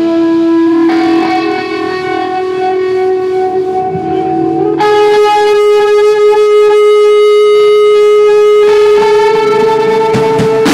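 Electric guitar played through an amplifier, holding long sustained notes with no drums. The held pitch steps up about a second in, again about halfway through, and changes once more near the end.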